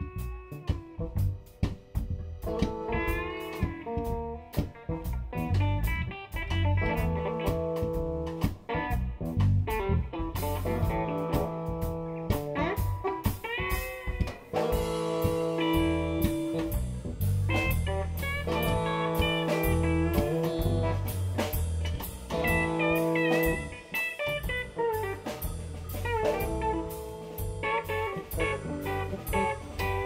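Live blues band playing an instrumental passage: electric guitar lead with bent, gliding notes over a bass line and drum kit. Cymbals come in about ten seconds in.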